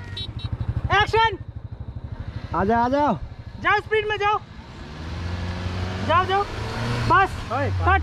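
A small hatchback car drives up and passes close by, its engine and tyre noise rising over the last few seconds and peaking near the end. A low, fast-throbbing engine idles in the first couple of seconds. People's voices call out over both.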